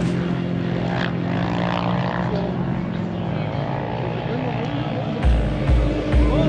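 Steady drone of vehicle engines running on the ice, with voices in the background. The drone fades after about three seconds. About five seconds in, music with a heavy bass beat cuts in.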